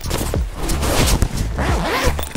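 Zipper on a soft fabric carrying case being pulled along, a continuous scratchy zipping.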